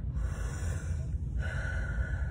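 A woman taking a deep, audible breath: a long draw of air, a brief pause, then a second breathy stretch.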